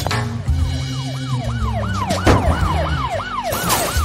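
Police car siren sound effect in a fast yelp, each wail rising and falling about four times a second, starting about a second in. Background music with a low steady bass plays under it.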